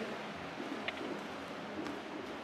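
Faint rustling of cotton gi fabric and bodies shifting on a grappling mat, with a couple of soft clicks.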